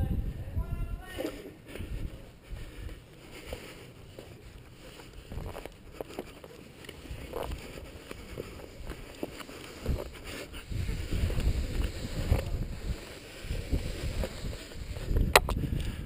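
Low rumble of wind and handling noise on a body-worn camera's microphone during a rappel, swelling toward the end. Scattered scrapes and clicks come from the rope, carabiner and boots on the rock face.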